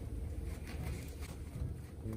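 Cotton head wrap fabric rustling softly as it is twisted and wrapped around a bun by hand, with a few faint brushes of hands on cloth over a low room rumble.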